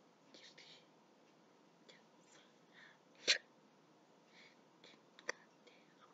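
Mostly quiet, with a few faint breathy, whisper-like sounds and two short sharp clicks, the louder about three seconds in and a smaller one about two seconds later.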